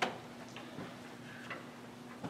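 One sharp click, then a few faint, scattered ticks over a steady low hum.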